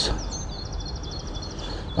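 A small songbird sings a rapid, high trill of evenly repeated notes lasting about a second and a half, over steady outdoor background noise.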